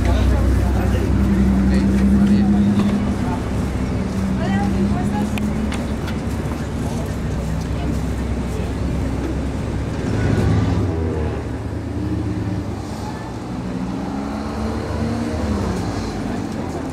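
Street traffic: a car engine running close by, its low hum strongest in the first few seconds, with people talking in the background.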